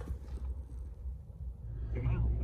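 Low, steady hum of a small car's engine idling, heard from inside the cabin.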